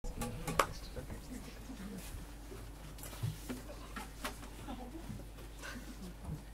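An acoustic guitar being picked up and slung on its strap: a few sharp knocks and handling rustles, the loudest about half a second in, over a steady low hum and faint murmuring voices.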